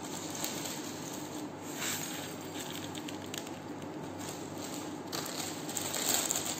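Soft, scattered crinkling of plastic instant-noodle wrappers being handled, over a steady background hiss.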